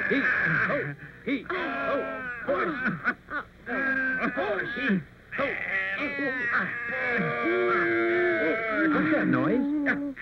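A group of cartoon ant voices vocalizing without words as the ants carry food to their storehouse, in phrases broken by short pauses about one, three and five seconds in.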